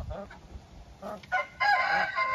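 Rooster crowing: one long call that begins near the end, with fainter sounds from the flock before it.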